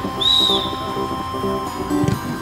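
A referee's whistle gives one short blast, signalling the kick-off, over background music.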